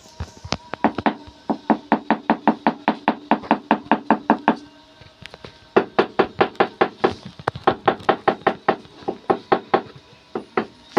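Rapid, even tapping on a large ceramic floor tile with the handle of a hand tool, about four or five taps a second, in two runs broken by a pause of about a second near the middle: the tile is being knocked down to bed it into the mortar.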